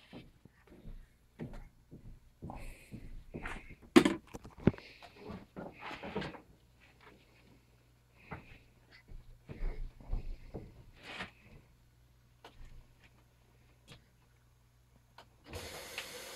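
Fabric rustling and scattered soft knocks as a blanket is bundled up and moved on a hard floor, with one sharp knock about four seconds in. A faint low hum runs underneath, and a steady hiss starts just before the end.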